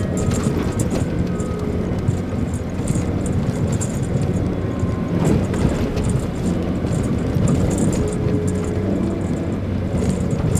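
Mitsubishi Pajero Mini driving on a snowy dirt road, heard from inside the cabin: a steady engine and road drone, with scattered light rattles and clicks as it bumps along.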